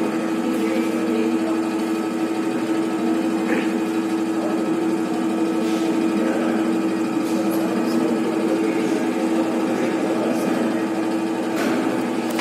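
Hydraulic pump of an FIE universal testing machine running with a steady hum as it drives the ram during a tension test.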